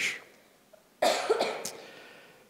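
A single cough about a second in, sudden and then fading over the next second.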